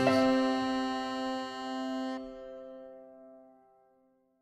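Closing chord of a Celtic folk band, struck once at the start and left to ring, its higher notes dropping away about two seconds in and the rest fading out near the end.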